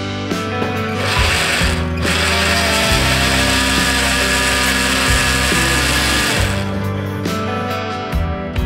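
Electric blender motor running over background guitar music. It gives a short burst about a second in, then after a brief gap runs for about four and a half seconds, puréeing the water and green plant pieces in its plastic jar, and stops well before the end.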